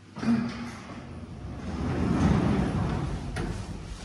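Passenger lift's automatic sliding doors running, a rushing sound that swells to its loudest about two seconds in and then fades.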